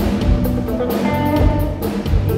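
Live band playing an upbeat song in a concert hall, with a drum kit beat, guitar and bass under a male vocalist singing into a microphone.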